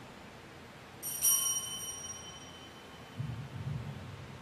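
A single strike of an altar bell about a second in, its ringing tone fading away over about a second, marking the priest's genuflection after the elevation of the consecrated host. A brief low sound follows near the end.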